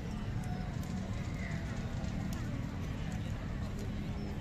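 Outdoor ambience: a steady low rumble with faint, indistinct voices of people in the distance and a few light clicks.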